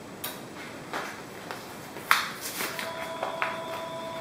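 Light handling noises: a few scattered knocks, the loudest about two seconds in followed by a brief scrape, with a faint steady tone in the last second.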